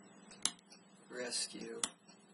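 A short, unclear vocal sound between two sharp clicks about a second and a half apart.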